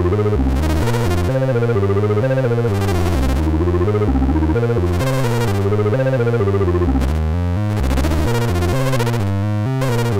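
kNoB Technology η Carinae analog Eurorack VCO playing a sequenced line, its notes stepping to new pitches several times a second. Its tone is heavily waveshaped and wavefolded, and the timbre keeps shifting under modulation.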